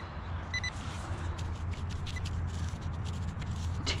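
Handheld metal-detecting pinpointer giving two very short high beeps about half a second in, over a steady low hum and light handling clicks. The pinpointer is misbehaving and not reading properly.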